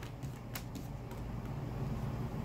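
Quiet room with a steady low rumble and a few faint clicks and rustles as tarot cards are handled.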